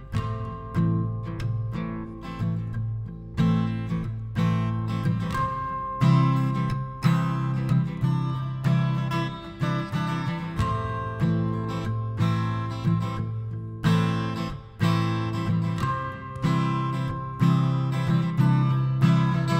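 A Taylor acoustic guitar played solo, strummed chords each ringing out and fading before the next is struck, at a slow, even pace.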